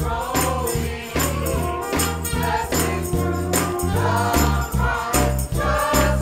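Many voices singing a hymn verse together over instrumental accompaniment, with sustained bass notes and an even percussion beat.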